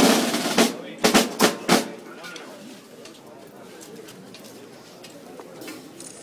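Marching band snare and bass drums playing a roll, then three final strokes that end about two seconds in. After the drums stop, only the low chatter of a crowd remains.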